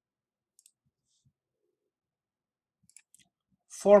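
Near silence broken by a few faint clicks of a computer mouse, about half a second in and again around three seconds in. Speech begins just before the end.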